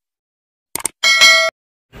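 Subscribe-button animation sound effect: a quick double click a little under a second in, then a short bright bell ding lasting about half a second that cuts off suddenly.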